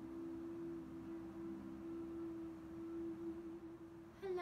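A woman humming one long, steady note, soft and almost pure in tone.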